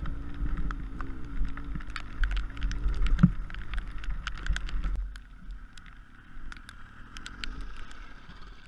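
Honda CBR600F inline-four engine running at low speed over rough gravel, its note rising and falling as the throttle is worked, with low wind rumble on the helmet microphone and many scattered sharp clicks. It all drops quieter about five seconds in.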